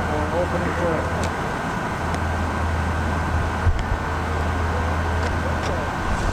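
Steady rush of a large park fountain's water jets spraying and splashing into the basin, with a low steady hum underneath and faint voices in the first second and near the end.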